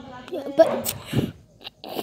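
A person's voice making short, unclear sounds and breathy noises close to the microphone, with a few sharp clicks and a dull knock.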